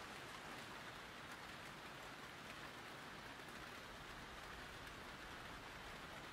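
Faint, steady rain ambience, an even hiss with no distinct drops or other events.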